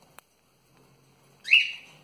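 Albino cockatiel giving one short, loud chirp about one and a half seconds in, rising in pitch and then holding.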